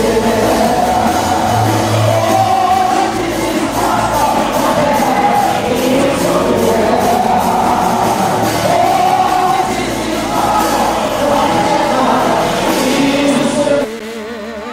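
Congregation singing a gospel song together with instrumental accompaniment and a steady beat.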